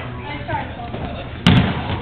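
A dodgeball striking hard once, a sharp thud about one and a half seconds in, over players' voices.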